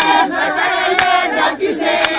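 A crowd of women singing together in a loud group, with a sharp clap about a second in.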